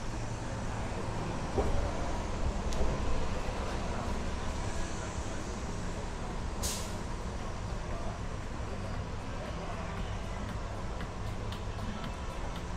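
City street ambience: a steady low rumble of traffic, with a short, sharp hiss a little over halfway through.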